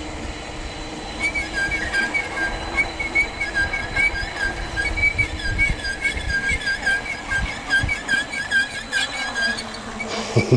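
Mountain bike's suspension shocks squeaking over and over as the bike is ridden, a few short squeaks a second that stop just before the end. Under them is the steady rolling and wind noise of the ride.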